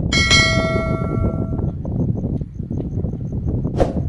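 Notification-bell 'ding' sound effect of a YouTube subscribe-button animation: a bright metallic ring that fades out over about a second and a half. A steady low rumble runs underneath, and a short sharp click comes near the end.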